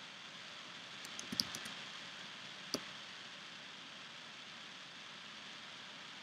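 Computer keyboard keys clicking softly: a quick run of a few keystrokes just after a second in, then one more key press nearly three seconds in, over steady faint hiss.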